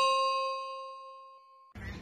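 Notification-bell chime sound effect ringing out and fading away. About three-quarters of the way through it cuts off abruptly to steady background room noise.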